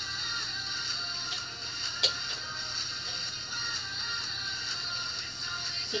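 Background music playing steadily, with one sharp click about two seconds in.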